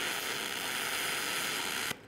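Aluminum MIG welding arc running with a steady hiss, cutting off just before the end. The voltage is set too high for the wire feed, around 28 volts, so the wire is vaporizing before it reaches the plate.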